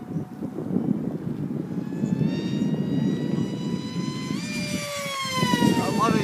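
Multiplex Funjet Ultra RC model jet's electric motor and pusher propeller whining through a fast pass. The high whine grows louder, jumps up in pitch about four seconds in, then slides down in pitch as the plane goes by. A low rumble of wind on the microphone runs underneath.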